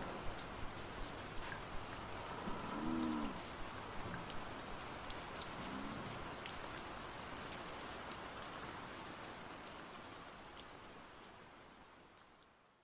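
Steady rain with scattered individual drop ticks, fading out gradually toward the end.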